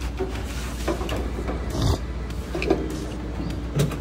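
LS-swapped V8 engine idling with a steady low rumble, with a few light knocks over it.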